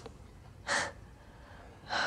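A person's single short, sharp breath, a gasp, about two-thirds of a second in.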